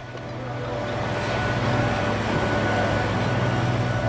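Steady engine drone with a low hum and a few held tones, swelling over the first second and then holding.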